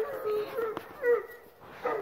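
A Great Pyrenees dog whining in a string of short notes.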